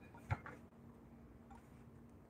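A single light knock about a third of a second in, then quiet room tone with a faint steady hum and a few soft ticks.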